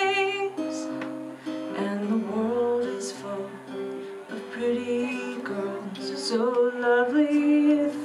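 Solo live music: a steel-string acoustic guitar strummed and picked in a slow accompaniment, with a woman's voice singing a few notes over it in places.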